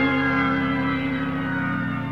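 Rock band music: a long, held chord of sustained tones that slowly fades, with a few faint sliding tones above it.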